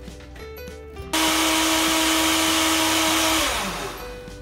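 Countertop blender switched on about a second in, running steadily on a load of milk and banana, then switched off after a couple of seconds with its motor whine falling as it spins down.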